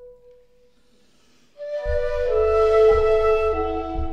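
Shakuhachi (Japanese bamboo flute) music with accompaniment: a held note fades away into a short pause, then about a second and a half in a new breathy phrase of held notes enters over a low, steady accompaniment with soft low strokes about once a second. The shakuhachi carries the natural reverberation of the cave where it was recorded.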